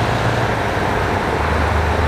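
Steady roadside noise: a low hum of idling vehicle engines under an even hiss.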